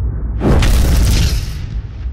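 Cinematic asteroid-impact sound effect: a deep rumbling boom, with a loud rushing blast that starts about half a second in and dies away after about a second.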